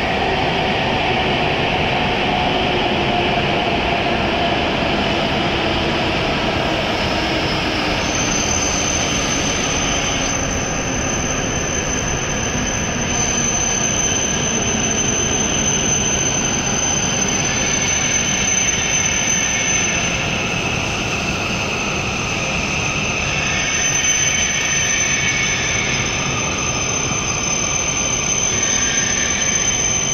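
W7 series Shinkansen train pulling slowly into the platform. A whine from the drive falls in pitch as it slows over the first several seconds, and a steady high squeal sets in about eight seconds in, over the rumble of the running gear.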